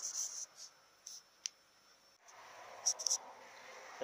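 A few faint, short rustles and one sharp click, like light handling noise.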